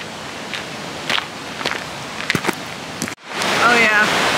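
Footsteps on a gravel path, a step about every half second, over a steady outdoor hiss. About three seconds in the sound cuts off abruptly and a louder, steady rush of a small waterfall takes over, with a voice beginning over it.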